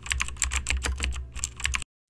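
Computer keyboard typing sound effect: a quick run of key clicks, about eight a second, over a low hum, stopping shortly before the end.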